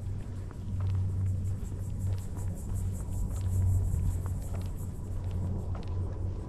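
Steady low rumble of wind across the camera's microphone while walking outdoors, with a faint, fast, high-pitched pulsing above it.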